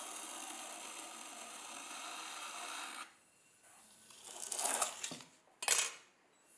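A kidney scraper scraping the outside wall of a leather-hard clay bowl as it turns on the potter's wheel, a steady rasp for about three seconds that straightens the wall. Then two shorter, louder rubbing sounds come, one a little after four seconds and one just before the end.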